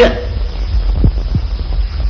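Steady low hum on the recording, with two faint brief sounds a little over a second in.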